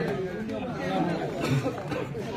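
Spectators chattering: several voices talking at once, overlapping.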